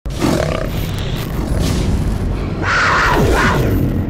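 Cinematic logo-reveal sound effect: a dense rumbling whoosh that swells louder about two and a half seconds in, with a few falling pitch sweeps near the end.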